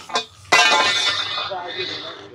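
A steel scaffold tube clangs against metal about half a second in and keeps ringing with a bright, bell-like tone that slowly fades.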